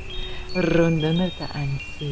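Chimes ringing with several overlapping high tones that start at different moments and each hang for under a second. Under them a voice intones long, drawn-out syllables, the loudest stretch coming about half a second in.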